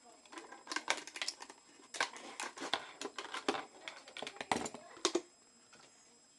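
Knife cutting into a plastic soda bottle: irregular crackles and snaps of the plastic, which stop about five seconds in.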